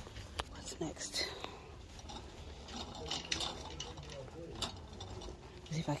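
Wire shopping cart rattling as it is pushed over a hard store floor, with a low rumble from its wheels and a few sharp clinks from the glassware riding in its basket.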